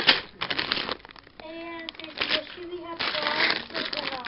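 Clear plastic bags of LEGO bricks crinkling, with the bricks inside clicking, as they are handled. A voice is heard in short stretches around the middle and near the end.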